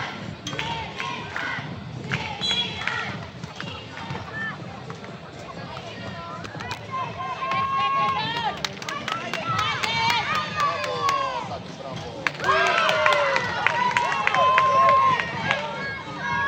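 Young players' voices calling and shouting over one another on an outdoor basketball court, loudest in the last few seconds, with a few sharp taps in the middle.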